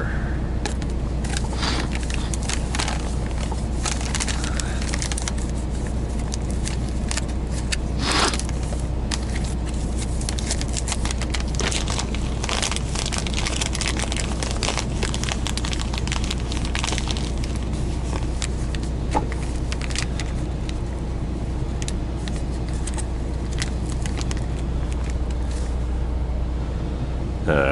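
A steady low engine hum under a run of small clicks, scrapes and crinkles from a spoon, a glass French press and a coffee bag being handled, with a sharper knock about 8 seconds in and a click near 19 seconds.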